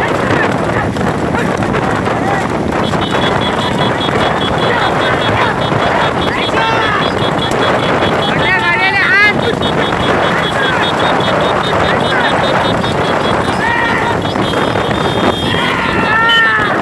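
Loud, constant rush of wind on the microphone mixed with motorbike engines running alongside a galloping horse cart, with men shouting now and then, loudest about halfway through. A thin high tone with rapid pulses comes in about three seconds in and stops near the end.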